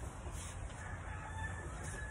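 A long, drawn-out bird call, like a rooster crowing, starting about a second in over a steady low rumble.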